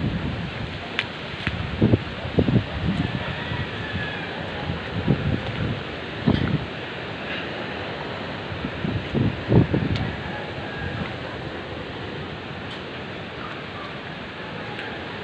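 Strong typhoon wind rushing steadily. Gusts buffet the microphone in low surges several times, strongest in the first ten seconds.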